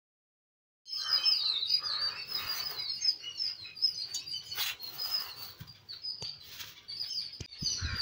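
Small birds chirping in quick, repeated high-pitched notes, starting about a second in, with a few sharp clicks in between.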